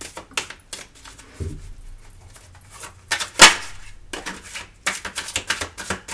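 A deck of Golden Universal Tarot cards being shuffled by hand: an uneven run of quick card clicks and slaps, with one louder snap about halfway through and a quicker flurry near the end.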